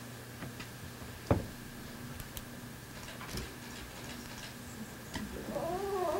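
Quiet room tone with a faint steady electrical hum and a thin steady whine, broken by scattered sharp clicks, the loudest about a second in. A voice begins faintly near the end.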